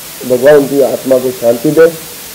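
A man speaking into a microphone over a steady background hiss; the speech starts a moment in and breaks off at the end.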